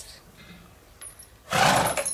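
A horse gives one short, loud snort through its nostrils about one and a half seconds in.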